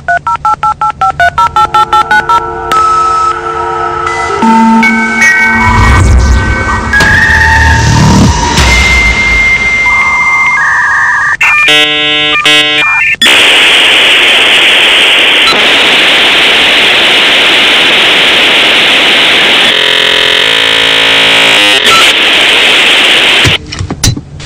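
Dial-up modem connecting: a quick run of touch-tone dialing beeps, then a series of whistling handshake tones with a steady high tone, a burst of rapid chirping about twelve seconds in, and a long loud hiss that cuts off just before the end.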